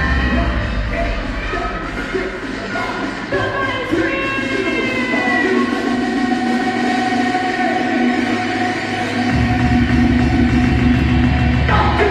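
A live DJ mix of dance music playing loud; the bass cuts out a few seconds in and comes back in full some six seconds later, a breakdown and drop.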